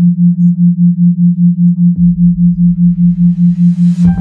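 A steady low pure tone throbbing about five times a second, the pulse of a theta-wave binaural beat. About halfway through a low rumble comes in under it, and a hiss swells up toward the end.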